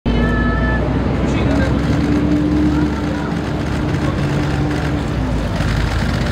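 Street crowd: many people talking at once over a steady low rumble of city traffic.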